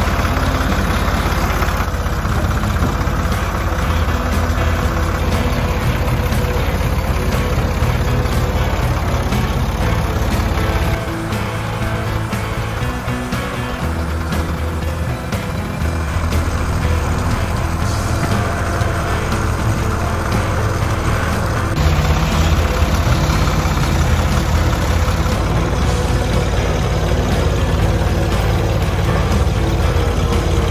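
Ford 340A tractor loader's engine running continuously while it works, with background music laid over it. The engine level dips about a third of the way in and picks up again later.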